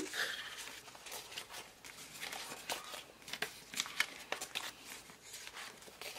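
Paper planner sticker sheets being handled and flipped through by hand: a run of light, irregular paper rustles and small clicks.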